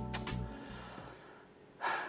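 A man's quick, sharp intake of breath near the end, just before he speaks. Under it, background music fades out early on.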